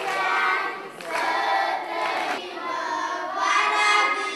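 A group of young children singing together in chorus.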